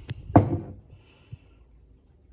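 A mug set down on a hard surface: a short click, then one hard knock, and a faint tick about a second later.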